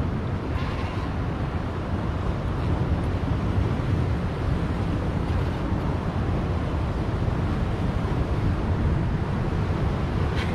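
Steady rumble of wind buffeting the microphone, mixed with the wash of surf against rocks.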